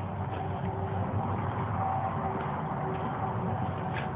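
Distant road traffic: a steady low noise with a faint hum running under it.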